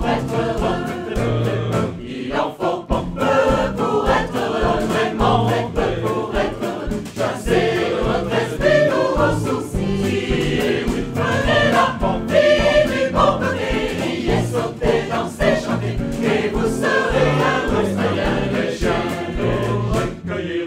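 Mixed choir of men's and women's voices singing an upbeat song in several parts, with a bouncing bass line under the melody.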